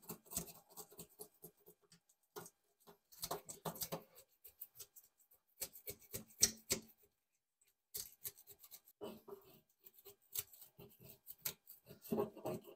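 Metal spoon scraping scales off a whole red snapper, rapid short strokes against the grain in runs of a second or two with brief pauses between.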